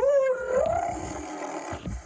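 A child's voice giving one long, drawn-out howl that rises in pitch at the start, holds for about a second and a half, then fades.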